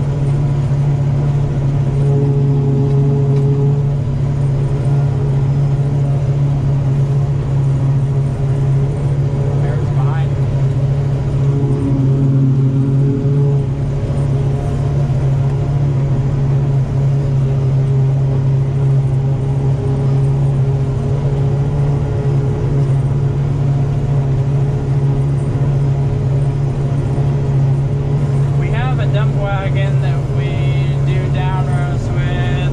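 John Deere 5830 self-propelled forage harvester running steadily under load while chopping standing corn for silage, heard from inside its cab as a constant low machine hum. A wavering higher sound joins it near the end.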